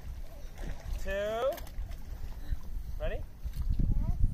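A voice counting down, saying "two" and then "ready?", over a steady low rumble of wind on the microphone.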